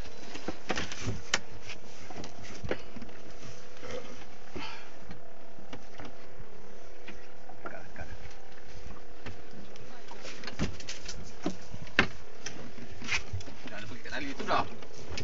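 Boat engine running steadily, with scattered clicks and knocks from the fishing rod and reel being worked, and one sharper knock late on.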